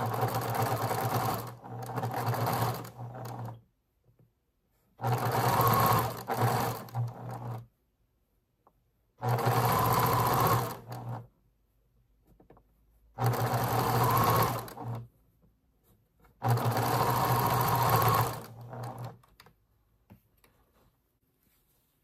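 Electric sewing machine stitching a seam through patchwork fabric, running in five bursts of two to three seconds each with short pauses between them.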